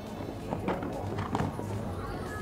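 A cantering horse's hoofbeats on sand footing as it jumps a fence, with two louder thuds about two-thirds of a second apart, heard over background music.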